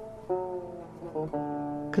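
Background music played on a plucked string instrument: a few soft chords, shifting quickly around the middle, the last one held to the end.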